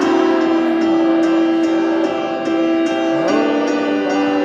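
Piano played live through an arena sound system, chords held and ringing, with a change of notes a little after three seconds.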